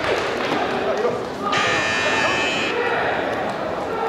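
Electronic match buzzer of a taekwondo scoring system, sounding once as a steady buzzing tone for a little over a second, signalling the end of the bout. Voices murmur in a large hall throughout.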